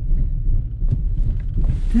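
Steady low rumble inside a car's cabin as it drives slowly: engine and road noise.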